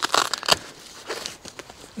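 Nylon tent fly rustling and crinkling as a hand lifts the vent flap and feels for its zipper pull, loudest in the first half second and then a faint scratching of fabric.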